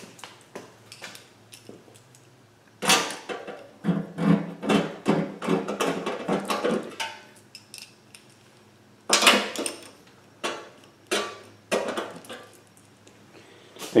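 Steel oil pan bolts and washers clinking against a zinc-plated Milodon steel oil pan as they are set in and turned with a socket on an extension. The result is sharp metallic clicks and rattles in two bouts, with a pause of about two seconds between them.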